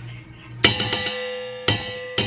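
A tin can knocked against the rim of a stainless steel cooking pot to shake out condensed soup. There is a sharp knock about two-thirds of a second in and another near the end, with lighter taps between, and the pot rings on with a long metallic tone after each knock.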